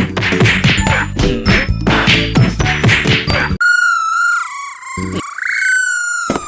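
Cartoon brawl sound effect: a rapid flurry of whacks, clangs and dings that cuts off abruptly about three and a half seconds in. It is followed by a high, wavering whistle-like tone for over two seconds.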